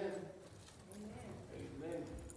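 Faint murmured talking among several people, with a few light footsteps on the platform floor.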